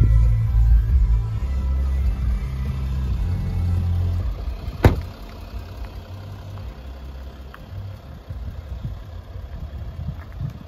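Background music with a heavy bass line fades out after about four seconds. A single sharp click follows, then a Range Rover Vogue's engine idles with a quiet, steady low rumble.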